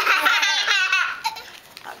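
A young child laughing, high-pitched and in quick bubbling pulses, for about a second before it dies away.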